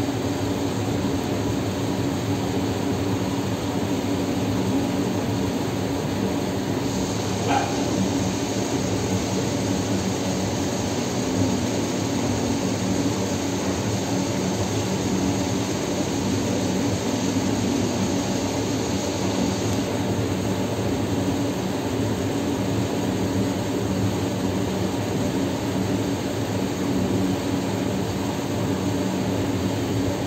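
Steady machine noise, a whooshing hum that keeps an even level throughout. A faint high whine comes in about seven seconds in and stops about twenty seconds in.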